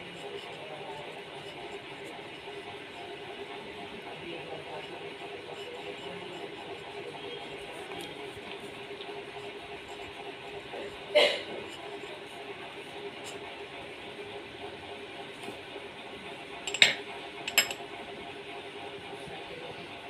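Glass dip pen writing on paper under a steady faint room hum and hiss. It is broken by a sharp glassy clink about halfway through and two more close together near the end.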